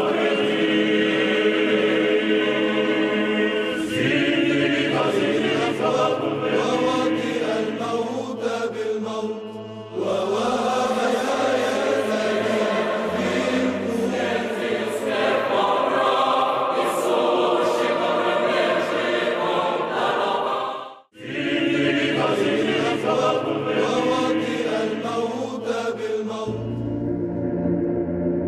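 Church choir chanting over a held low drone, as title music. The chant changes phrase a few times and breaks off for an instant about five seconds before the end, then resumes.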